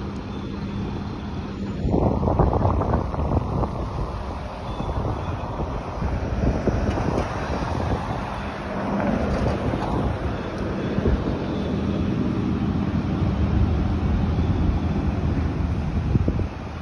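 City road traffic passing close by, cars and vans on a busy avenue, with wind rumbling on the phone's microphone. The noise swells about two seconds in and stays up.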